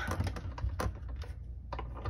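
Scattered light clicks and knocks from a plastic die-cutting machine being handled and set into place on a work mat.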